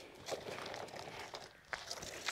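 Faint footsteps and shoe scuffs on a concrete path, with a few light taps.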